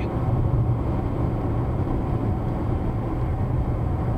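Steady road and engine noise inside a moving car's cabin, tyres rolling on asphalt at cruising speed, with a constant low drone.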